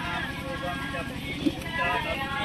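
Voices talking over a steady low mechanical hum that pulses quickly and evenly. One short sharp tap about one and a half seconds in.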